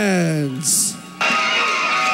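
A ring announcer's voice holds the end of a fighter's name in one long call that falls in pitch and ends on a brief hiss. About a second in, music with sustained, guitar-like tones starts.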